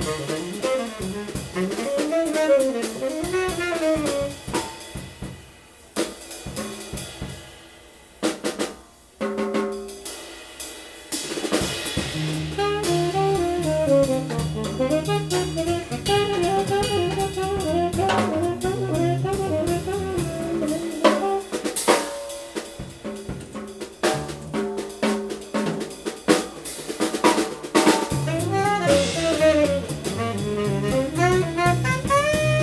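Live small-group jazz: a tenor saxophone improvising a melodic line over a swinging drum kit with snare, rimshots and cymbals, and an acoustic double bass. About six to ten seconds in the band drops to a quieter, sparser passage, then the bass comes back strongly under the saxophone.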